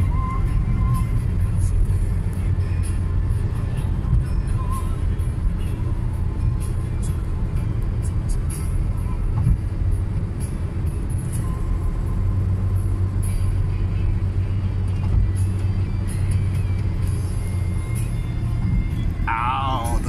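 Steady low road and engine rumble inside a moving car's cabin at cruising speed, with faint music playing in the background. A voice begins right at the end.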